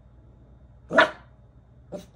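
A dog barks once, short and sharp, about a second in, followed by a shorter, quieter bark just before the end.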